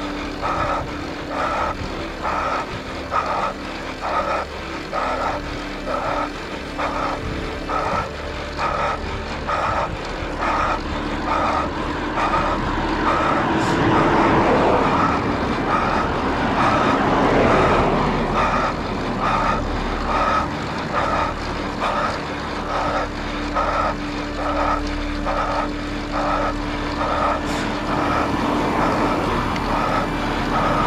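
A car passing on the road, its tyre and engine noise rising and falling over several seconds in the middle, then a second vehicle's engine hum coming closer near the end. A regular pulsing sound repeats a little faster than once a second throughout.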